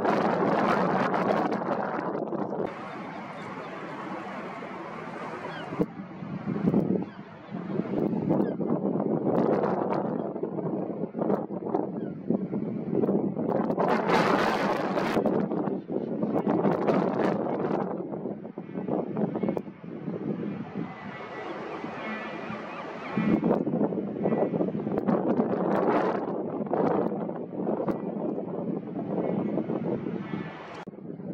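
Wind buffeting the microphone in gusts that rise and fall throughout.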